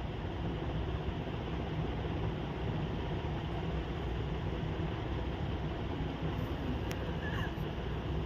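Maize-flour puri deep-frying in hot oil in a kadhai: a steady sizzle of the bubbling oil.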